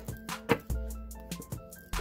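Tarot cards being shuffled by hand, a run of quick card clicks and taps, the strongest about half a second in. Soft background music with sustained notes plays under it.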